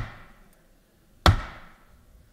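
Two sharp knocks at a wooden rostrum, each with a short ringing tail. The first lands just as the sound begins and the second about a second and a quarter later.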